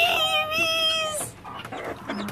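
A woman's high, drawn-out wordless squeal of delight, a steady tone held for about a second before it fades away.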